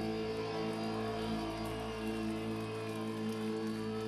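Rock music with electric guitar: one chord held and ringing steadily, cut off at the very end.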